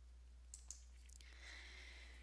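Near silence: quiet room tone with two faint short clicks about half a second in.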